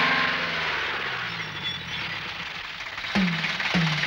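Jeep engine running with a rushing hiss, its pitch sinking as the vehicle slows and pulls up. About three seconds in, two deep drum hits from the film score land about half a second apart, each dropping in pitch.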